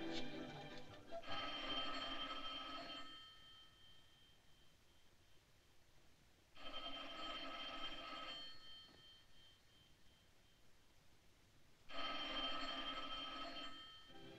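Telephone bell ringing three times, each ring about two seconds long and about five seconds apart, with no one answering.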